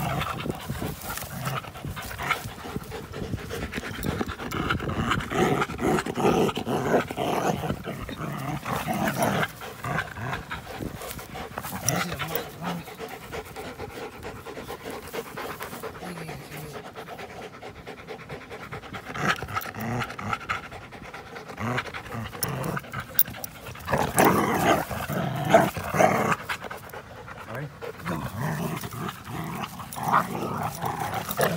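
Two dogs, an American pit bull terrier and a Belgian Malinois mix, panting hard as they play-wrestle and tug on a rope toy, with a louder flurry of scuffling about three-quarters of the way through.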